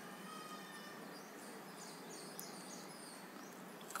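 Faint steady background hiss, with a few faint high chirps and small scratchy ticks.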